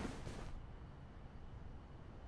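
Faint steady low hum and hiss, with the tail of the preceding word fading out in the first half second.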